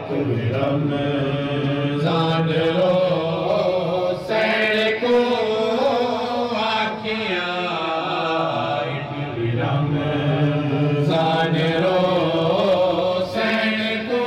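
A male voice chanting a noha, a Shia mourning lament, in long melodic phrases with held notes. A new phrase starts every few seconds.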